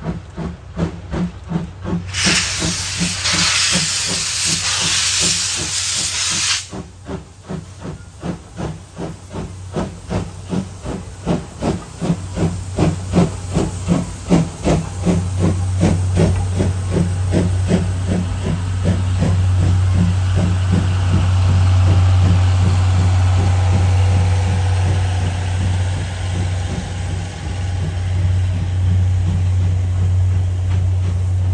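C11-class steam tank locomotive C11 123 working past at speed, its exhaust chuffing in a quick, even rhythm, with a loud burst of steam hiss from about two seconds in that lasts about four seconds. From midway the passenger coaches roll by with a steady low hum and rhythmic wheel clatter on the rails.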